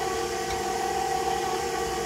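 KitchenAid stand mixer running at a low speed, its motor giving a steady, even whine as the flat beater mixes pumpkin pie and crust in a stainless steel bowl.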